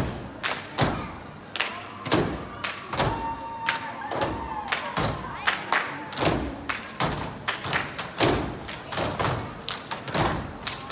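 Thuds and slaps on a stage floor in an uneven rhythm, two or three a second, from dancers' beaded jump ropes striking the stage and their feet landing during a jump-rope routine.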